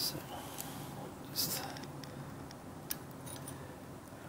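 Light handling sounds of metal digital calipers being opened and set against a turbocharger's exhaust outlet flange: a click at the start, a short metallic scrape about a second and a half in, and a sharp tick near three seconds.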